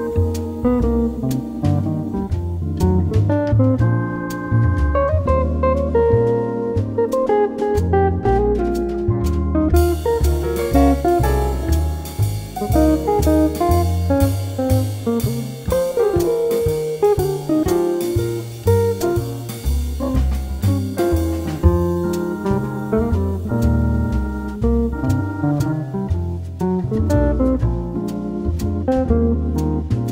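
Instrumental quartet jazz: plucked guitar over double bass and drum kit, playing steadily. A bright cymbal wash comes in about a third of the way through and fades out a little past the middle.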